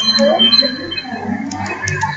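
A steady high-pitched tone, like a beep or whistle, fading out about a second in, followed by a few sharp clicks, over low hum and background room noise.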